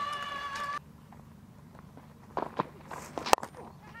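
A cricket bat strikes the ball with one sharp crack about three seconds in: the shot that goes up in the air and is caught. A few soft footfalls from the bowler's run-up come just before it, over quiet ground ambience.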